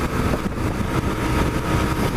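1997 BMW R1100RT's boxer-twin engine running steadily at cruising speed, mixed with wind and road noise.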